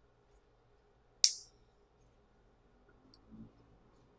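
A fingernail clipper snipping a fingernail once, a single sharp click about a second in. Soft handling sounds follow near the end.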